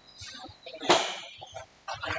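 Adobo sauce simmering in a frying pan, bubbling with irregular low blurps and sharp pops of spatter; the loudest pop comes about a second in, another near the end.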